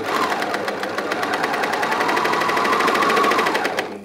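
Bernina overlocker running at speed, sewing a flatlock ladder stitch along a folded hem: a fast, even stitching chatter that starts abruptly, holds steady, then slows and stops just before the end.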